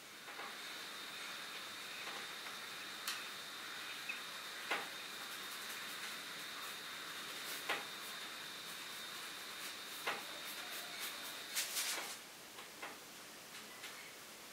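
Faint paintbrush work on a canvas: a soft hiss with scattered light taps and clicks, a small cluster of them near the end. A thin, steady high whine runs under it and stops shortly before the end.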